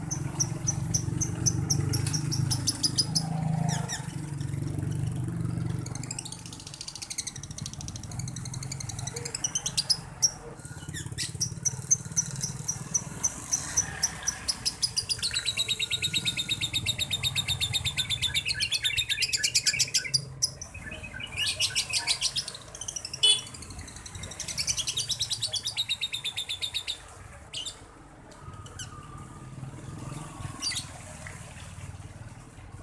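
Male lovebird chattering in long runs of fast, high chirps with short breaks, the longest run lasting about five seconds around the middle. This is the bird in heat, at the early stage of 'konslet', the keepers' term for a lovebird's long chattering. A low rumble underneath fades out in the first few seconds.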